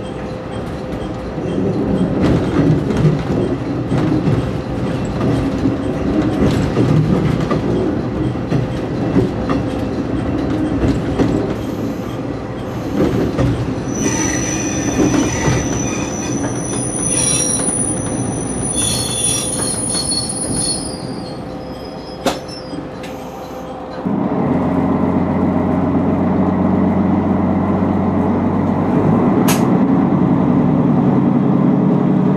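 Train running along jointed track and over points, with a steady rumble and clatter. Its wheels squeal in thin high tones for several seconds from about halfway. About four-fifths of the way in, a louder steady engine drone abruptly takes over.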